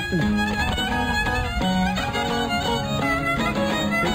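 Greek island folk music: a violin plays an ornamented melody over a laouto's plucked accompaniment. This is an instrumental passage between sung verses.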